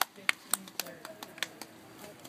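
A run of sharp, irregular clicks and knocks, about eight in two seconds, with faint voices in the background.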